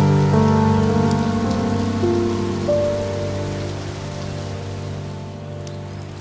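Steady rain, with slow, soft instrumental music over it: a chord struck just before rings on and fades away, and a few single notes come in along the way.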